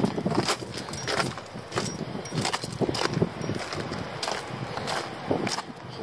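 Footsteps on a gravel path, irregular steps about two or three a second.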